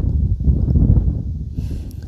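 Wind buffeting the microphone: a loud, irregular low rumble with no clear pitch.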